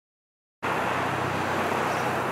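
Steady outdoor background noise with a faint low hum, cutting in abruptly about half a second in after silence.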